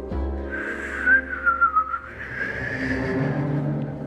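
A high, wavering whistle, dipping in pitch and rising again, over a low sustained orchestral score.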